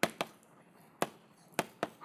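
Chalk tapping against a chalkboard as characters are written: about five short, sharp taps, irregularly spaced.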